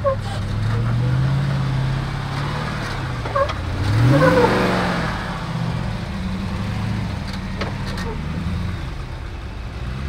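Jeep Gladiator's engine pulling the truck up a steep slickrock ledge, its revs rising and falling about a second in and again more sharply about four seconds in, then settling to a steady pull. Someone laughs over the revving.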